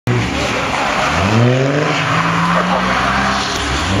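Holden VY Commodore S's V6 engine revving hard as the car slides sideways on a wet surface, over the hiss of skidding tyres. The revs climb about a second in, hold, dip briefly just before the end and climb again.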